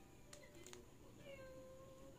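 Two soft clicks, then one faint, drawn-out, meow-like call in the second half, over quiet room tone.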